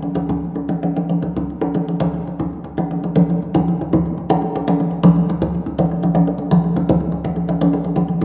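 Conga drums playing a steady run of strokes, convolved with a hallway's impulse response so that each stroke carries the hallway's reverberation.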